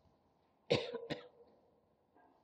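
A person coughing twice in quick succession, a sharp cough about two-thirds of a second in and a shorter one just under half a second later.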